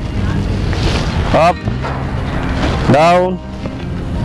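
A man's voice calls out two short, loud exercise commands, about a second and a half apart, over steady background music.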